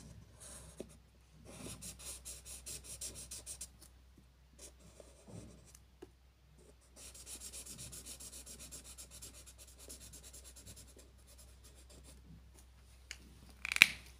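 Felt-tip marker scratching quickly back and forth on paper as a shape is coloured in, in two spells of rapid strokes at about four to five a second. A single sharp click near the end.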